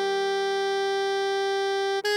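Alto saxophone holding a single steady note, written E5 (concert G), over a sustained Eb major accompaniment chord; the next note starts right at the end.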